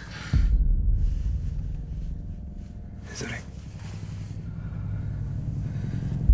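A deep, low rumble that starts suddenly with a boom about a third of a second in and carries on steadily. A single word is spoken about three seconds in.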